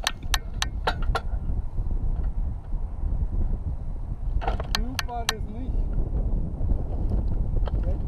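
Gusty wind buffeting the microphone of a camera mounted low on a landed hang glider, a steady low rumble throughout. A few sharp clicks come in the first second and again about halfway through.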